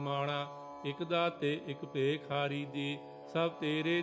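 Sikh kirtan: a voice singing a Gurbani hymn in ornamented phrases that glide in pitch, over a steady sustained drone.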